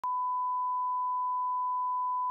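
A steady 1 kHz sine test tone, the reference beep that goes with television colour bars.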